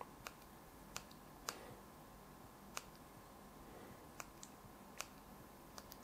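Faint clicks of the buttons on a small handheld RGB lighting remote being pressed, about nine presses at uneven intervals, over near silence.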